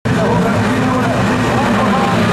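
Several autocross race cars' engines running and revving together at the start line, mixed with voices.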